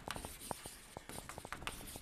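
Chalk writing on a blackboard: a faint, irregular run of light taps and short scratches as letters are written.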